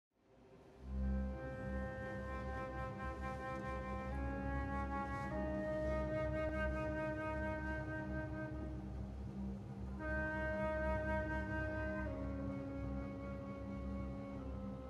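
Slow orchestral music starting about a second in: a flute plays long-held notes over a low sustained drone, the melody moving to a new note every few seconds.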